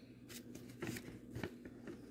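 Faint paper rustles and a few light clicks as a baked loaf in its waxed-paper lining is handled and lifted from the cake pan.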